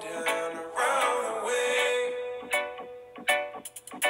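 Background pop song with plucked guitar, including one held note in the middle. The music thins out briefly near the end.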